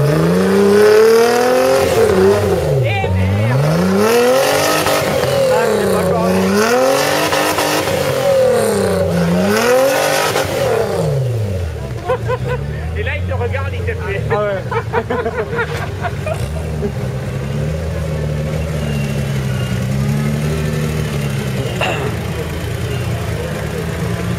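Off-road buggy's engine revving up and down over and over, about five rises and falls in the first ten seconds, as the buggy works through deep mud. After that the engine settles into a steadier, lower run.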